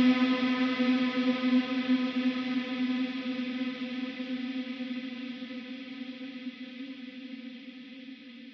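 A single held electric guitar chord with echo and chorus effects, ringing out and fading steadily as a post-black metal track ends.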